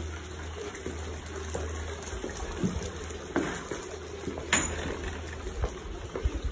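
Steady running and splashing of water from the ornamental ponds beside the entrance path, with a few footsteps on the concrete walkway.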